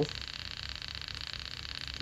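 Steady background hiss with a fine, fast, even buzz running through it and a low hum beneath; no distinct event stands out.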